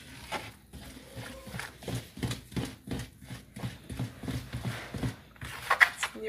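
Bread dough being stirred and mixed in a bowl: a quick, irregular run of knocks and scrapes, roughly three a second.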